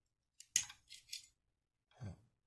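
Metal 1911 magazine follower and spring being wiggled out of the magazine tube: a few short, high-pitched metallic scrapes and clicks about half a second to a second and a half in.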